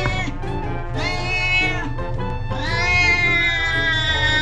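Domestic cat yowling in long, drawn-out growling calls while its belly is being pressed: a short one at the start, another about a second in, then a longer one held from about two and a half seconds in.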